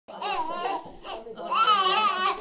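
Young children laughing, in two high-pitched bursts.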